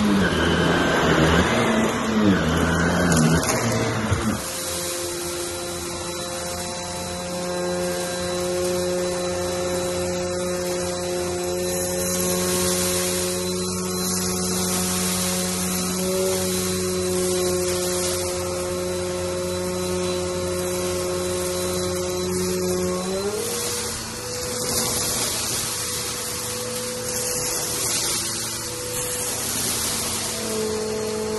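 A vacuum cleaner running on shag carpet. After a sudden change about four seconds in, a vacuum with a hand-tool nozzle runs steadily on a plush rug, its motor giving a steady hum of several tones with a hiss. The motor's pitch steps up a little about 23 seconds in.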